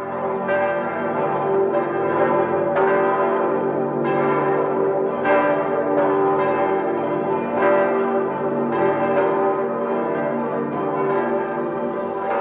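Church bells ringing, a new strike about once a second over the continuing ring of the earlier ones.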